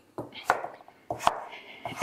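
Kitchen knife chopping pumpkin on a wooden chopping board: about four short, irregular knife strikes, the loudest about half a second in.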